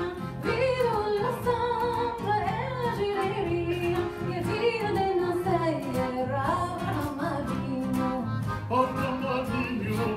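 Live song: a woman singing a melody with long, bending, ornamented notes, accompanied by nylon-string acoustic guitar and accordion.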